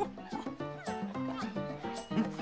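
Light background music with cartoon monkey calls: short cries that slide up and down in pitch.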